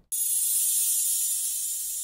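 A steady, high-pitched hiss like static that starts suddenly and slowly fades.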